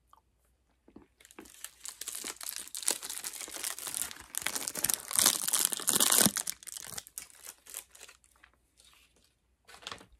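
A foil chocolate wrapper being crinkled and crumpled in the fingers: a dense crackling that starts about a second in, is loudest a little past the middle, and thins to a few scattered crackles near the end.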